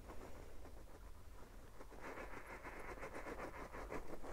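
Faint, gritty crunching and scraping of a radio-controlled rock crawler's tyres on sandstone as it struggles to climb a steep slab, growing louder about halfway through.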